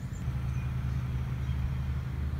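Steady low rumble with a few faint, short high chirps over it.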